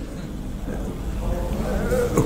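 Quiet, broken laughter.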